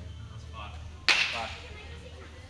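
A single sharp crack about a second in with a short ringing tail, a bat striking a ball in the neighbouring batting cage.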